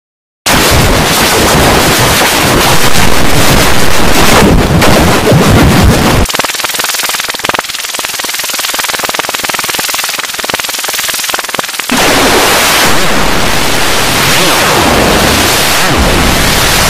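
Heavily distorted, clipped electronic noise, a loud wall of crackle from the deep lows to the highs. About six seconds in it drops to a thinner, quieter hiss, and about twelve seconds in it returns to full loudness.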